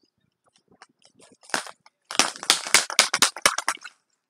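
Handling noise from a pink plastic egg-shaped toy: a burst of dense crackling and clicking that starts about a second and a half in and is thickest over the last two seconds.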